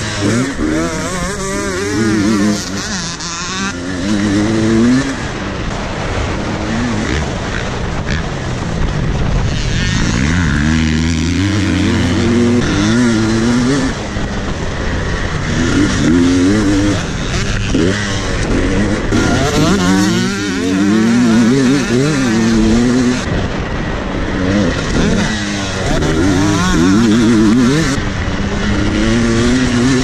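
KTM dirt bike engine under hard riding, revving up and dropping back again and again as it accelerates and shifts gear.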